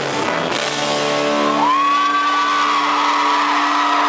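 Live rock band with piano holding one sustained chord. About a second and a half in, a high note slides up and is held over it.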